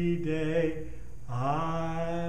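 A man singing unaccompanied and slowly, in long held notes: one note ends under a second in, and after a short break a new note slides up into place and is held.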